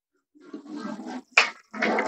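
A sheet of paper rustling and sliding as it is folded by hand, with one crisp click about halfway through, likely a crease being pressed.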